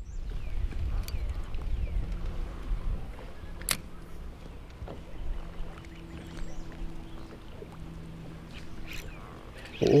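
Wind rumbling on the microphone and water moving around a small fishing boat, with a sharp click about four seconds in and a faint steady hum in the second half.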